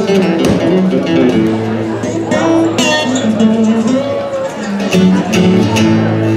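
Two acoustic guitars playing a duet instrumental intro, one strumming chords while the other plays melodic lead lines with a few gliding notes.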